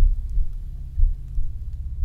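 Low rumbling drone with a slow heartbeat-like double pulse about once a second, a sound-design bed under horror narration.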